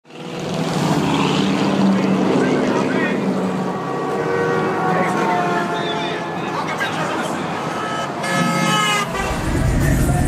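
People's voices with a horn tooting, the horn most plainly about eight seconds in.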